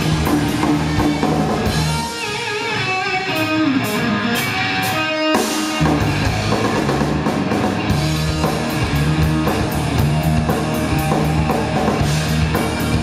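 Live rock band of electric guitars, bass guitar and drum kit playing. About two seconds in, the bass and drums drop out, leaving guitar with bent notes. They come back in together about six seconds in, and the full band plays on.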